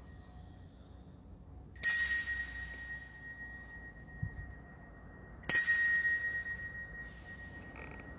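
Altar bell struck twice to mark the elevation of the chalice at the consecration. Each strike rings out clearly and fades over about a second and a half.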